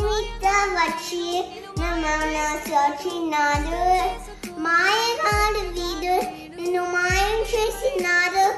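A young girl singing a melody over a backing track, with a deep bass thump about every two seconds.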